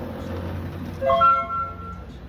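Blue diode laser engraver at work: a steady low hum from the machine, then about a second in a loud pitched tone that steps up in pitch and lasts just under a second, as the laser goes off.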